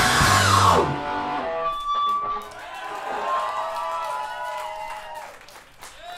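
Live rock band finishing a song: the full band with drums and distorted guitars stops about a second in, and then a few sustained electric guitar notes ring on and fade out.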